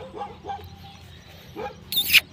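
Dog barking: a few short barks in the first half second and another about a second and a half in, with a loud sharp noise starting right at the end.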